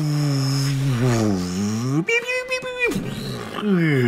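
A man vocally imitating an X-Wing flyby. A long low engine-like hum with the voice dips and then rises in pitch, then about two seconds in comes a higher steady tone lasting under a second, and near the end a falling whoosh.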